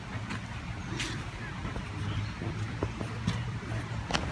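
Steady low rumble of distant road traffic, with a few faint clicks.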